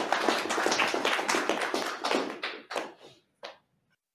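Audience applauding, a dense patter of hand claps that thins out about three seconds in to a last few scattered claps.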